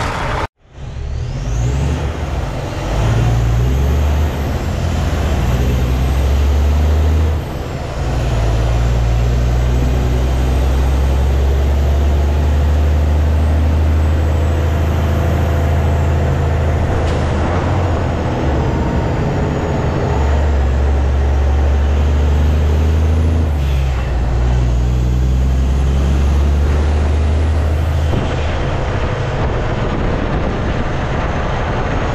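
Kenworth dump truck's diesel engine pulling through town, its low note dropping and picking up again several times as it changes gears. The sound cuts out briefly about half a second in.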